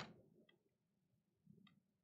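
Near silence, with two faint clicks of computer keyboard keys, about half a second in and again near the end.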